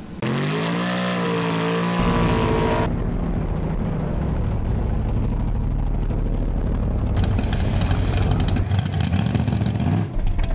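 Drag-racing engines in several cut-together clips: first one engine revving, its pitch climbing and then holding; then an engine held at high revs through a smoky burnout; from about seven seconds a harsher, crackling engine.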